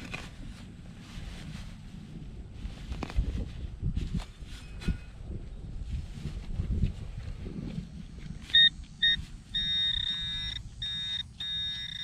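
Soft thuds and scrapes of a gloved hand working loose soil in a dug hole, then a handheld metal-detecting pinpointer sounding: two short high beeps about eight and a half seconds in, then a nearly continuous high tone broken by brief gaps, the signal that metal lies close to its tip.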